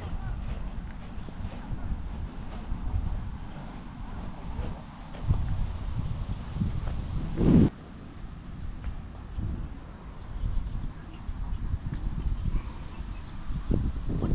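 Wind rumbling on the microphone, with a louder burst about seven and a half seconds in that cuts off abruptly.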